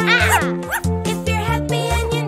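Cartoon puppy barking twice in the first second over children's song music with a steady beat.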